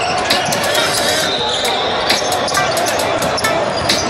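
Basketball bouncing on a hardwood gym floor during play, a string of sharp irregular thuds, with players' voices and game noise echoing in a large gym.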